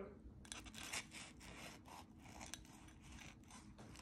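Knife sawing into the crisp, fried breadcrumb crust of a breaded, deep-fried avocado. It makes a faint run of small scratchy crunches.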